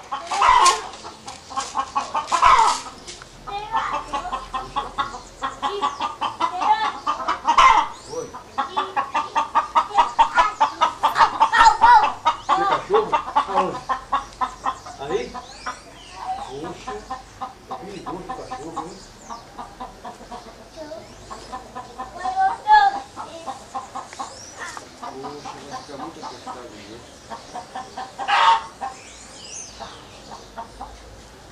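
Backyard chickens clucking and cackling: runs of short clucks, one long fast run in the middle, broken by several louder squawking calls.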